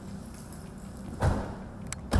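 A police patrol car's door being shut with a thump a little over a second in, after the officer gets into the driver's seat, with a short click near the end.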